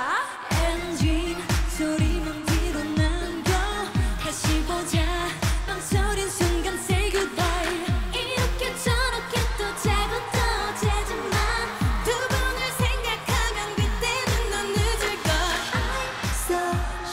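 A K-pop girl group singing a dance-pop song live over a backing track, with a steady kick drum at about two beats a second.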